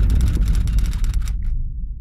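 Tail of a logo intro sting: a low bass tone fading out under a fast run of glitchy clicks, which cut off about one and a half seconds in while the bass keeps fading.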